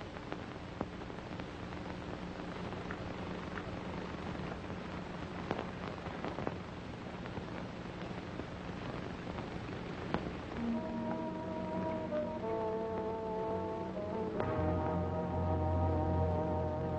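Orchestral film score in an old optical soundtrack with hiss and scattered crackles. A faint low held note carries the first part; sustained chords come in about two-thirds of the way through and swell near the end with a deep brass note.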